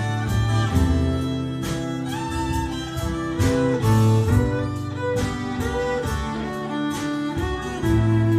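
Live acoustic band playing an instrumental passage: a violin carries the melody over a strummed steel-string acoustic guitar and a drum kit keeping a steady beat.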